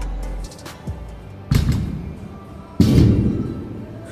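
Two heavy thuds, about a second and a half in and again near three seconds, of 75-pound dumbbells being dropped to the gym floor at the end of a set, over music with a beat.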